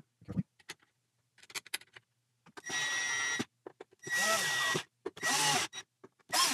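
Cordless drill driving the neck screws through the neck plate into the heel of a 1965 Fender Jazzmaster neck, in three short bursts, its whine rising and falling in pitch as the screws bite. A few faint clicks of the screws being handled come first.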